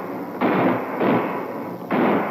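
Electronic shot and explosion sound effects of the Coleco Telstar Combat tank video game: three sudden bursts of noise, each fading away before the next.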